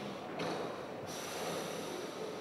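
Young southern elephant seal calling with its mouth open: a noisy, breathy call that ends about a second in, followed by a hissing breath.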